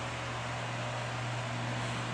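Steady background hiss with a constant low hum, even throughout, with no distinct taps or other events.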